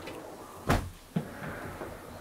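A sliding window sash pushed along its track. A sharp knock comes about two-thirds of a second in, and a lighter one half a second later.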